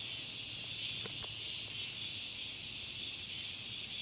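Summer cicadas and other insects singing together in a steady chorus, a continuous high-pitched drone.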